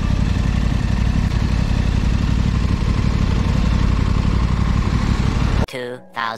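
Motorcycle engine running steadily while riding, under a constant rush of noise; the sound cuts off abruptly near the end.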